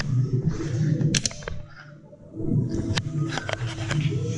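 Rustling and rubbing noise from a hand-carried action camera, with scattered sharp clicks and knocks of footsteps going up stairs; it drops quieter briefly about halfway through.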